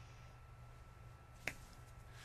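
Near silence: faint room tone, broken once by a single short, sharp click about one and a half seconds in.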